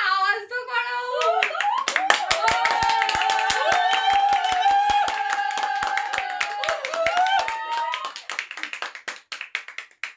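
Several people clapping quickly and steadily while voices call out together in one long, drawn-out note; the clapping thins out and stops near the end.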